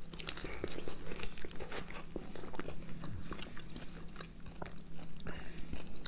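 Close-up chewing and biting of a juicy ripe nectarine, many small wet clicks and smacks scattered throughout.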